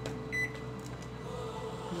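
Keypad of an IFB 23BC4 microwave oven beeping once, short and high, as a button is pressed while the cooking time is set.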